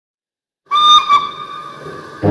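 A steam locomotive whistle, two short toots close together about three-quarters of a second in, then trailing off.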